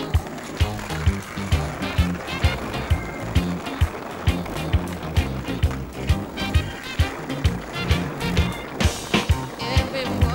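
Skateboard wheels rolling over street pavement, a rough noise that fades near the end, heard under music with a steady drum beat.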